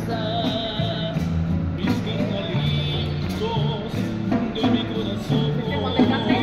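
Upbeat band music: a steady electric-bass line under regular percussion hits, with a high wavering melody line over it.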